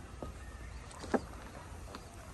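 A single sharp knock about a second in, with a fainter click just before, over a low steady rumble.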